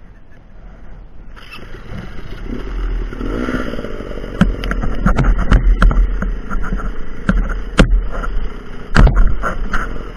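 Dirt bike engine running with a short rev about three seconds in, growing louder, mixed with scraping and several sharp knocks as the bike lurches and tips over in leaves and brush.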